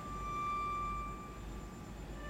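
String quartet music: a single high bowed string note held at a steady pitch, swelling and then fading away after about a second and a half.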